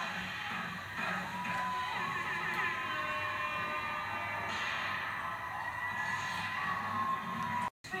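Television audio playing in the room: voices and music, with long held and gliding vocal tones. The sound cuts out for a moment near the end.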